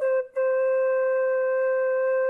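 Background music: a wind instrument holds one long steady note, which begins just after a brief gap near the start.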